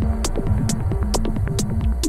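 Modular-synthesizer techno playing with a steady low pulsing bass and sharp high ticks about twice a second. The stepped bass-line sequence thins out here and comes back just after.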